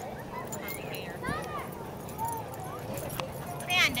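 Dogs wrestling in play on grass, with a few short high-pitched dog calls, over people talking in the background.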